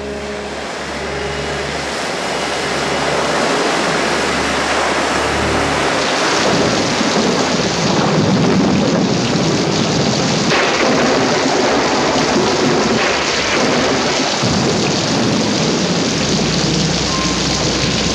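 A flood of water rushing down a street, a loud steady roar of churning water that swells over the first few seconds and then holds, with dramatic music underneath.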